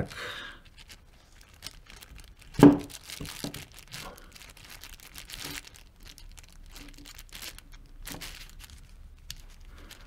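Plastic sheeting crinkling under the hands, with small clicks of a ratchet and socket turning the adjustment screw on an Aisin AW55-50SN transmission solenoid. There is one louder knock about two and a half seconds in.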